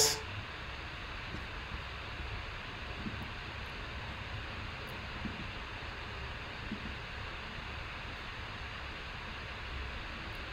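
Steady faint hiss of room tone, with a few faint ticks.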